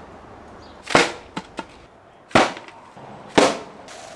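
Three sharp smacks, about a second in, then roughly a second and a half later, then a second after that, each dying away quickly: a homemade bamboo three-prong pole spear fired off its rubber sling band at a plastic bottle. Two faint clicks fall between the first two smacks.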